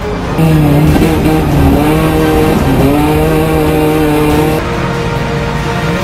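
Race car engine running hard at high revs, its pitch dipping briefly about two and a half seconds in, as on a lift or gear change, then holding again. It comes in suddenly about half a second in and drops away near the end, over background music.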